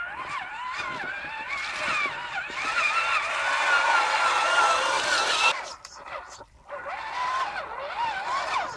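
Traxxas Summit RC monster truck's electric motor and geared drivetrain whining, the pitch rising and falling with the throttle as it crawls through a shallow creek. In the middle it gets louder with a hiss of churned water, which cuts off suddenly about five and a half seconds in; the whine returns near the end.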